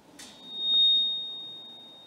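A single steady high-pitched tone swells up about half a second in, then fades slowly.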